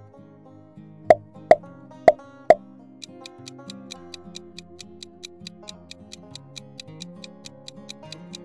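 Light plucked-string background music. About a second in come four sharp pops in quick succession, then a clock-like ticking sound effect starts at about four ticks a second for the question's countdown timer.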